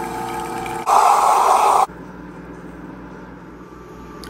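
Commercial espresso machine pulling two shots, its pump humming steadily. About a second in there is a much louder noisy burst lasting about a second, then a quieter steady hum.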